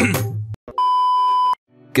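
The tail of a sung advertising jingle dies away. Then a single steady electronic beep sounds for a little under a second and cuts off sharply, followed by a brief silence.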